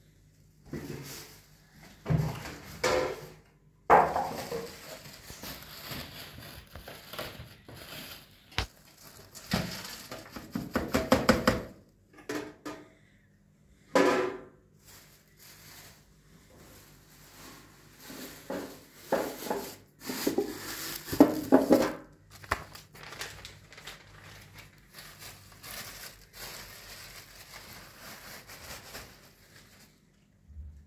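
Plastic rubbish bags rustling and crinkling as they are handled, in irregular bouts with knocks and clatter of household items between them.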